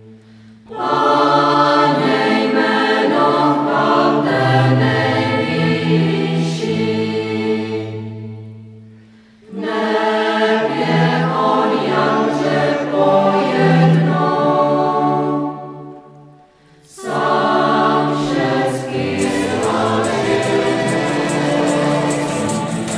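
A choir singing in three long phrases, each followed by a brief pause. In the last few seconds, sharp claps join in.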